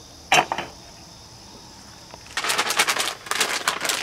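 An aluminium pot lid set onto a cooking pot with one brief metallic clink about a third of a second in. From just past two seconds, a plastic bag of frozen shrimp crinkles as it is handled.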